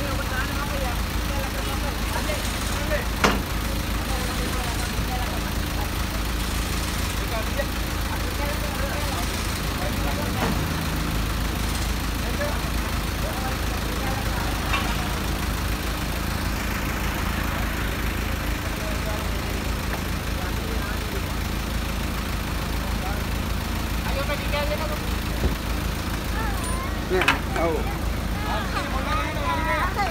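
Steady low hum of an idling vehicle engine, with a few sharp knocks, one a few seconds in and others near the end.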